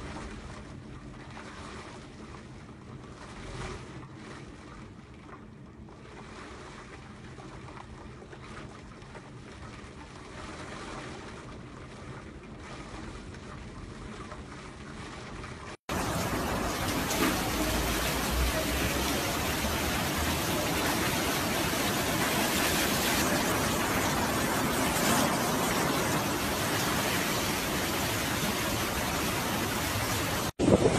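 Steady rush of heavy surf and wind at the sea. It is moderate at first with a low hum beneath it, then about halfway through it cuts abruptly to a much louder, fuller rush of wind and waves.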